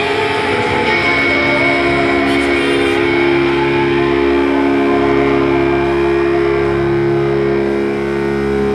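Electric guitars through stage amplifiers holding a sustained chord that rings on steadily, with no drums.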